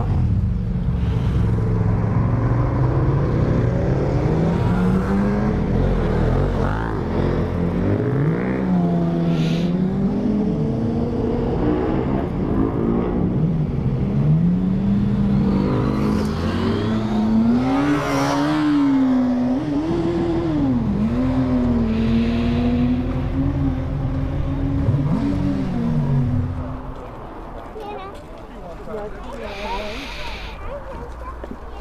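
Suzuki GSX-R750 inline-four sport bike engine running at low road speed, its revs repeatedly rising and falling as the throttle opens and closes. Near the end the engine note drops away sharply.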